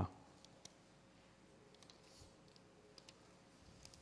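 Near silence: room tone with faint scattered clicks and soft rustles.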